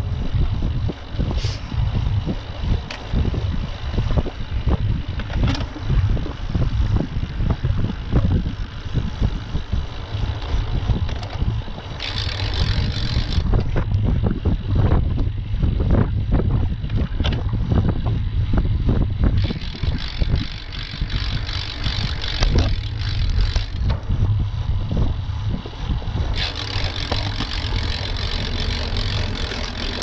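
Wind buffeting the microphone of a camera carried on a moving road bicycle, a continuous rough low rumble with tyre noise on asphalt. Three stretches of brighter hiss come in, about twelve, twenty and twenty-six seconds in.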